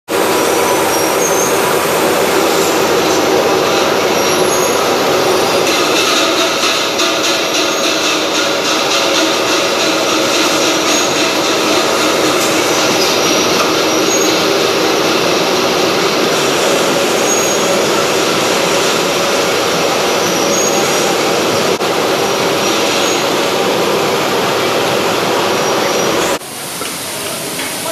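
Sweet-corn processing and canning line machinery running: a loud, steady mechanical din from conveyors and rotating equipment, with a faint hum running through it.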